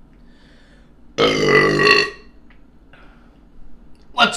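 A man's loud burp, about a second in, lasting just under a second.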